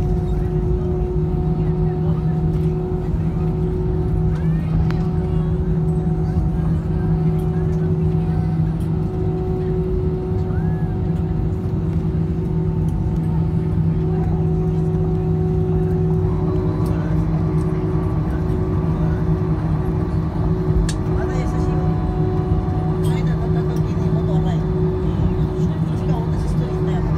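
Cabin noise of a twin-jet airliner taxiing after landing: the jet engines running at idle as a steady low rumble with a constant hum, heard from inside the cabin.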